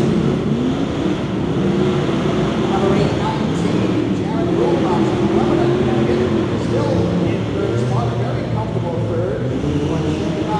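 Engines of pro-modified off-road race trucks running around an indoor dirt track, revving up and down as they race.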